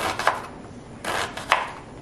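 Kitchen knife chopping an onion on a plastic cutting board: about four sharp, irregularly spaced chops.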